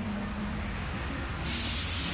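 A sudden burst of loud hissing, like escaping air or spray, starting about one and a half seconds in and lasting about a second, over low street rumble.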